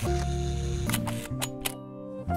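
Background music with sustained chords over a low bass and sharp clicking percussion; the chords change about a second in.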